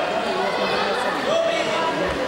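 Crowd chatter: many voices talking and calling out at once.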